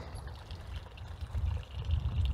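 Water from a short pond waterfall trickling and splashing over stacked rocks and the pond liner into the pool, under an uneven low rumble.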